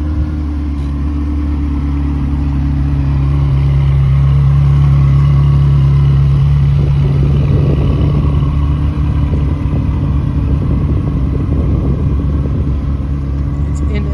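Ferrari 360 Spider's 3.6-litre V8 idling steadily, growing a little louder about a third of the way in and then easing slightly.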